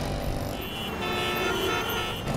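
Road traffic noise, with a long vehicle horn note from about half a second in.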